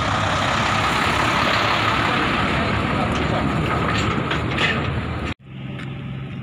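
A large truck passing close by, its engine and tyres loud and steady, until the sound cuts off suddenly near the end.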